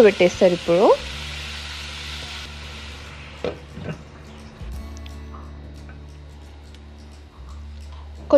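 A pot of poha sizzling on the stove as water is sprinkled in; the hiss stops about two and a half seconds in. About a second later comes a single click as a glass lid is set on the pot, over a steady low hum.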